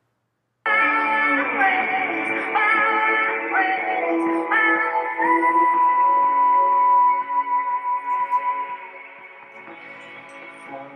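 A pop song with a sung melody played at maximum volume through the Raynic all-in-one Bluetooth alarm clock's built-in speaker, streamed from a phone; it cuts in abruptly about half a second in, after a brief silence where the track is skipped ahead. The sound is thin, with no bass.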